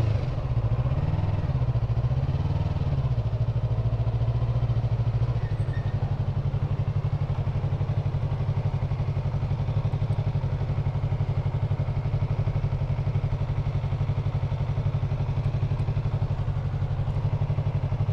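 Yamaha MT-03's 321 cc parallel-twin engine idling. Its note wavers for the first few seconds as the bike comes to a stop, then settles into a steady, evenly pulsing idle.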